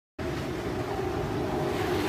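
A car engine running with a steady low rumble, starting a moment after the clip begins.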